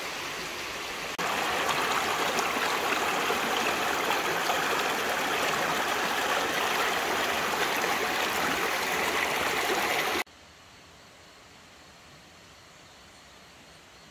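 Shallow river running over rocks in riffles: a steady rush of water that steps up louder about a second in and cuts off suddenly about ten seconds in, leaving only a faint steady hiss.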